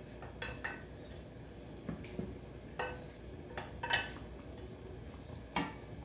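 A spoon clinking and knocking against a glass dish and a speckled-coated saucepan as chicken fillets are scraped out of the dish into the cream sauce: about eight light, separate clinks with a brief ring.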